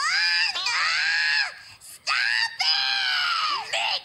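A cartoon baby screaming in two long, high-pitched wails, each rising at the start and falling away at the end, with a short break about halfway through.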